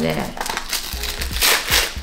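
White paper gift wrapping crinkling and rustling as hands unfold it from a round tea tin, in irregular bursts with the loudest rustle about one and a half seconds in.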